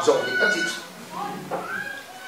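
Faint, high-pitched cries that glide upward in pitch: a short one about a second in, then a longer one that rises and holds near the end.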